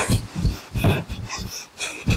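A person breathing hard in quick, ragged, irregular breaths, like heavy sighing or snorting.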